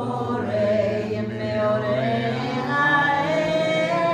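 A small group of men's and women's voices singing a wordless Jewish niggun together on syllables like "dai dai", in long held notes.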